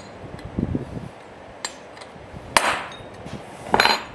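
Steel-on-steel clanks as a Pitman arm puller frees a hub, which the owner thinks had rusted to the shaft, from an old belt-drive compressor. A soft knock comes about half a second in, a sharp ringing clank about two and a half seconds in (the loudest), and a clattering, ringing clank near the end as the hub comes off.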